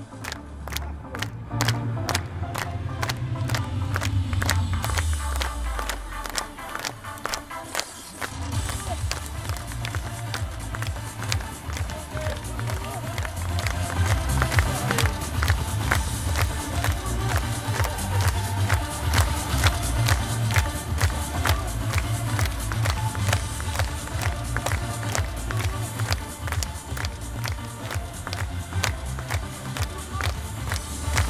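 Upbeat dance music with a steady, driving beat and heavy bass; the bass drops out for about two seconds some six seconds in, then the beat comes back in full.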